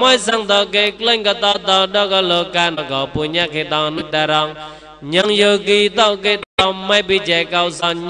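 A man's voice chanting in a Buddhist recitation, holding and gliding between notes. The chant fades out about four seconds in and resumes strongly about a second later.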